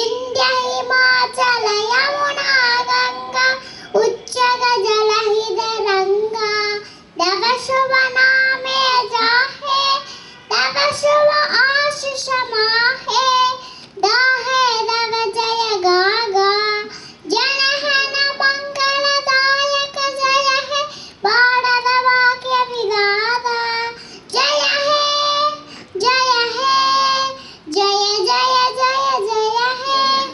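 A young child singing solo into a microphone, unaccompanied, in short phrases of held notes with brief breaks between them.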